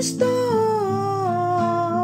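A woman's wordless vocal holding one long note that slides slowly downward, over a soft acoustic guitar accompaniment in a Catholic devotional song.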